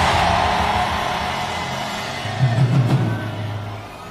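Background music of sustained low notes playing under a pause in the preaching, with the echo of a shouted line dying away at the start; the music grows quieter toward the end.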